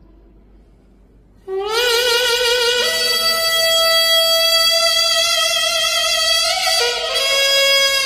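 A piri, the Korean double-reed bamboo pipe, playing a slow solo melody. After a pause of about a second and a half, a loud, reedy note slides up into pitch with a wide wavering vibrato, steps up to a higher held note, then drops lower near the end.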